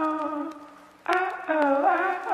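Background music: the wordless melody line of a song's intro, with held, sliding notes. One phrase fades out about half a second in, and a new phrase begins just after a second in.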